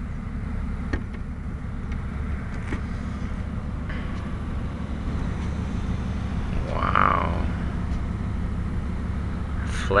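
Steady low rumble of a motor vehicle engine idling, with a brief voice in the background about seven seconds in.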